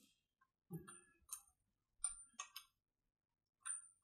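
A few faint, irregular metallic clicks and taps as the bar nuts on a Stihl MS270 chainsaw's side cover are tightened by hand with a wrench.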